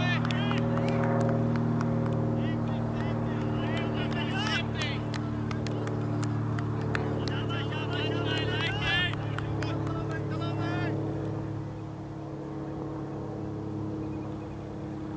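A steady engine hum holding several pitched tones, getting a little quieter near the end, with faint distant voices over it.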